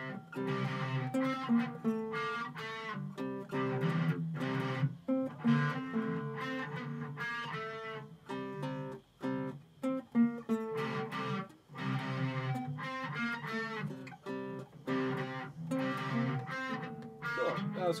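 An acoustic guitar and an electric guitar strumming chords together in a steady rhythm, with brief gaps between chord changes.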